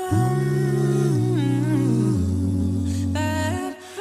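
A cappella vocal music: several voices hum and sing held chords over a deep sung bass line. The chord changes about every second, and the sound dips briefly just before the end.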